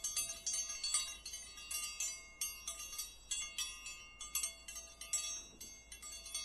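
Chime sound effect for a notification bell: a steady stream of high, overlapping bell-like notes struck several times a second, ringing like wind chimes.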